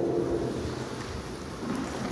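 Steady hiss with a low rumble of room noise in a hall, with no distinct events.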